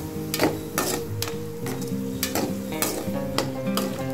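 Metal slotted spatula stirring and scraping diced potatoes frying in a pan, about two strokes a second, over the sizzle of the oil. Background music plays along.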